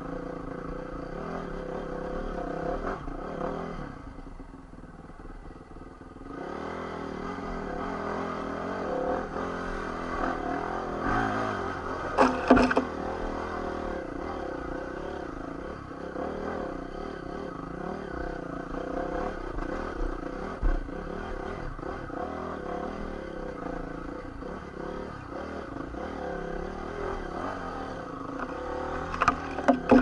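Honda CRF450 dirt bike's single-cylinder four-stroke engine running under load, its pitch rising and falling with the throttle. It eases off for a couple of seconds about four seconds in. Sharp knocks and clatter from the bike hitting rocks come about twelve seconds in, once more around twenty seconds, and near the end.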